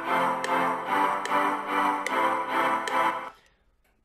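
Simple three-note chord progression played back on a reFX Nexus software synth preset, freshly quantized so the chords land on the beat. A new chord sounds roughly two and a half times a second, and playback stops a little over three seconds in.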